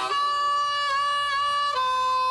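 Radio station ID jingle ending on a long held chord of several sustained notes. The chord steps to a slightly different chord near the end.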